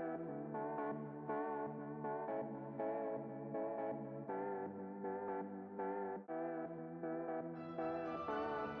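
Background music: soft ambient instrumental with sustained, pitched notes changing about every half second.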